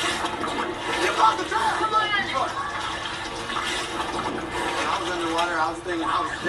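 Water sloshing and splashing in a stunt tank as contestants climb out, under a voice from the played TV clip.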